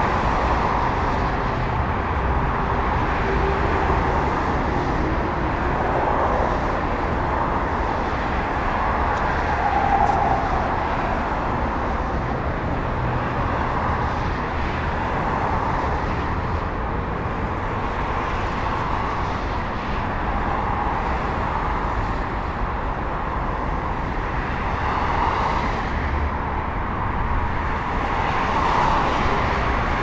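Steady outdoor road traffic noise, an even continuous rumble and hiss with slow gentle swells.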